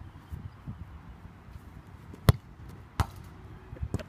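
A foot striking a soccer ball on grass: three sharp thuds. The first, about two seconds in, is the loudest, and two lighter ones follow at roughly one-second spacing.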